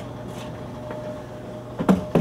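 A steady low hum with a fainter higher steady tone above it, broken by a sharp click right at the start and a knock shortly before the end as an open metal-edged road case is handled.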